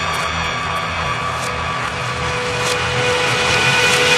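Psytrance track in a breakdown: held synth tones over a noisy, rumbling wash, with a few faint cymbal hits and no kick drum. The level builds a little toward the end.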